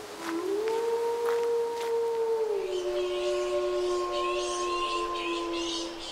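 Several wolves howling together in long, overlapping held notes that glide up at the start and drop in pitch partway through. Birds chirp over them from about halfway.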